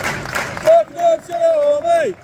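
A man's voice singing a football chant in three long held notes, the last one dropping away at the end, over the noise of the stadium crowd in the first half second.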